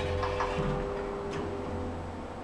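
Kone Monospace lift just after its doors shut: a sharp click, then a few lighter clicks and another about a second later, over a steady electrical hum from the lift machinery that dies away near the end.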